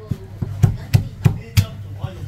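A Chinese cleaver chopping through braised poultry on a thick round wooden chopping block: about six sharp, evenly spaced chops, roughly three a second.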